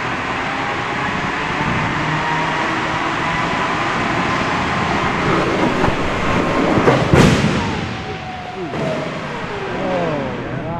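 Crash test: a car being towed at speed along the guide rail by the test track's cable system, a steady rumble with a faint whine that slowly builds, then a loud crash into the barrier about seven seconds in, dying away afterwards.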